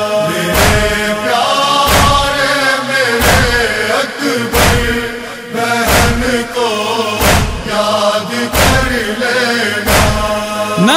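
Muharram noha (Urdu mourning lament) between sung lines: voices hold long chanted notes over a slow, deep drum beat, one strike about every 1.3 seconds.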